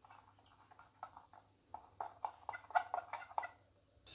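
A small metal tool, the tip of a pair of tongs, clicking and scraping against a white spotting tile well in a quick, irregular series of light taps while stirring magnesium oxide powder into water.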